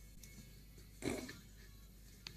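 A cat landing or bumping against a surface: one short, low thump about a second in.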